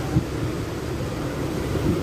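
Steady low rumbling background noise with a hiss over it, and one brief louder bump about a fifth of a second in.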